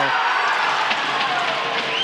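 Steady crowd noise in an ice hockey arena just after a goal is scored. A high, steady whistle tone starts near the end.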